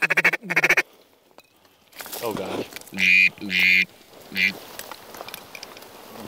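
Hand-blown waterfowl calls, loud and close: two sharp calls at the start, then after a short gap a gliding note and a run of three more short calls, calling to birds working the decoys.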